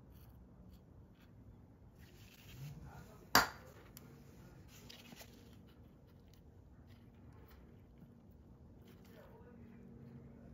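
Small clicks and scrapes of a steel seal puller working at the axle seal in a differential's aluminium housing, with one sharp metal clink about a third of the way in.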